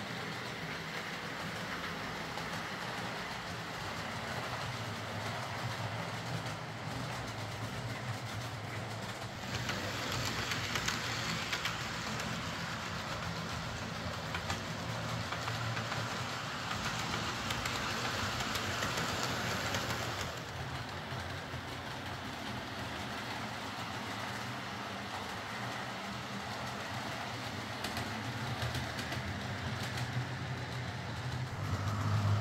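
OO gauge model diesel multiple unit running around a DC layout: a steady motor hum and wheel noise on the track. It grows louder and brighter for about ten seconds in the middle as the train comes nearer.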